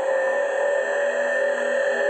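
Opening of a progressive psytrance track: a sustained electronic drone of several layered, held tones over a light hiss, with no beat yet.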